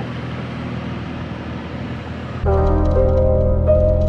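Vehicle engines idling, a low steady hum. About two and a half seconds in, loud music with held bell-like tones and a bass comes in over it.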